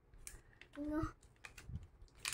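Scattered sharp clicks and crackles of a thin clear plastic tray being handled as a block of frozen gingerbread dough is turned over in it.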